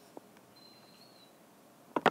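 Quiet room tone between narrated lines, with a faint click early on and a faint, thin high whistle lasting under a second.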